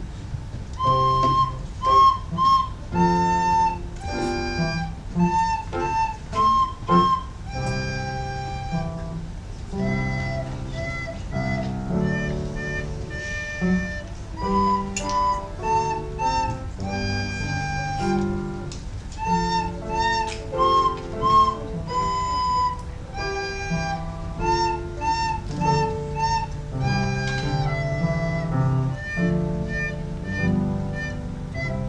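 A child playing a simple tune on a recorder, clear held and repeated notes, over a lower instrumental accompaniment.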